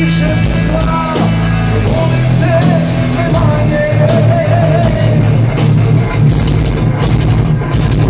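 Rock band playing live and loud: distorted electric guitar, bass and drum kit with regular cymbal hits, and the singer's voice carried over the top.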